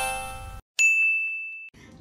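Electronic chime tones of a logo jingle dying away, then a single high ding held for about a second that cuts off abruptly.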